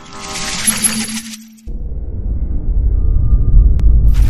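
Logo-sting sound effects: a glittering, chiming shimmer for about a second and a half, then a deep rumble that cuts in and swells louder, with a sharp click near the end.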